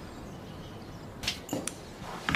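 Quiet room tone, then a short swish about a second in, followed quickly by two light clicks.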